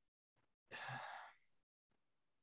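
Near silence with one short, soft breathy exhale from a person, like a sigh, about a second in.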